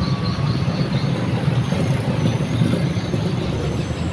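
Dense motor-scooter traffic: many small motorbike engines running as they pass, making a steady, unbroken drone.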